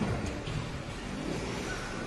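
A car engine revving, its pitch rising and falling near the middle.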